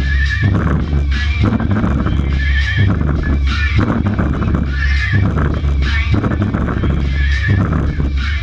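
Loud electronic dance music from a club sound system during a DJ set, with a heavy steady bass line and a high wavering, whinny-like sound that comes back about every two and a half seconds.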